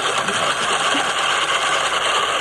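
Hand-cranked rotary egg beater whirring steadily as it whisks a liquid mixture of eggs, acrylic paint and water in a bowl. The thorough beating is meant to make the mix thin enough to pass through a sprayer.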